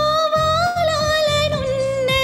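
A woman sings a Telugu film song over a recorded backing track with a steady low beat. She holds one long note that rises slightly about halfway through and drops near the end.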